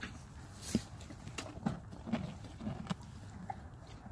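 A horse nuzzling right at the phone: a string of soft bumps and rubs from its head against the phone, starting about a second in and stopping near three seconds.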